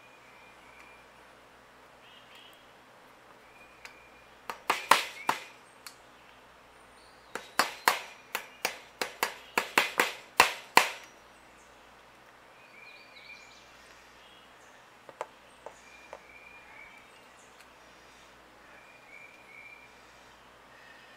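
Hammer blows on a yard wagon wheel's metal hub and axle while the wheel is being secured: a few sharp strikes about four seconds in, then a run of about nine strikes, roughly two a second, the last ones the loudest. Birds chirp faintly in the background.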